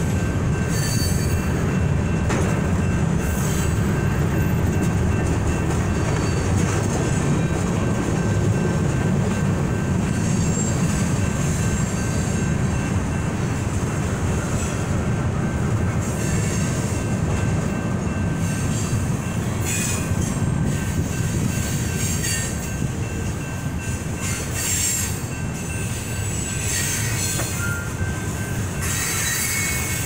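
Freight train cars rolling through a grade crossing with a steady, heavy rumble of wheels on rail. In the second half there are several bursts of high-pitched wheel squeal, most frequent near the end.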